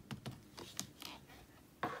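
Light, irregular clicks and taps of craft supplies being handled and set down on a desk.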